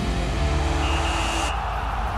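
Television theme music with steady bass and held tones, and a noisy swish laid over it that cuts off suddenly about one and a half seconds in.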